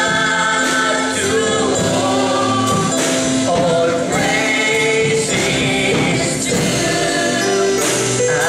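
A man singing a gospel worship song into a microphone, holding long notes over musical accompaniment.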